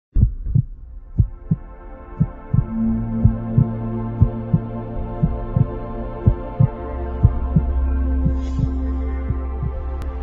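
Intro sound design: a heartbeat-like double thump about once a second over a sustained synthesizer drone, with a deep bass note entering about seven seconds in.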